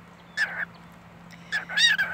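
Cockatiel giving two short, high calls, one about half a second in and a two-part one near the end.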